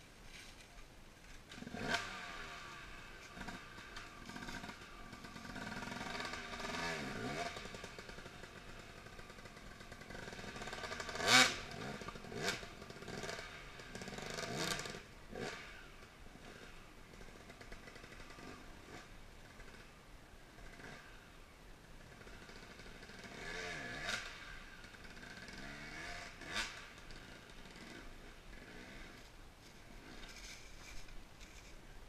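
Dirt bike engines revving in bursts some way off, rising and falling in pitch, with a sharp clank near the middle.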